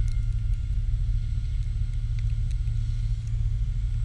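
Oxy 3+ electric RC helicopter flying some way off, heard as a faint steady high whine under a loud, steady low rumble.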